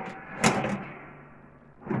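Metal drop-down door of a small portable propane oven pulled open with a sharp clank about half a second in, then another knock near the end as a hand reaches in to the rack.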